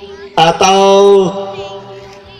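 A man's voice over stage loudspeakers calling out one long, drawn-out syllable at a steady pitch, starting about half a second in, then trailing off with an echoing tail.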